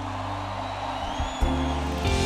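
Church worship-band music: a sustained keyboard chord is held, and a fuller bass chord comes in about one and a half seconds in.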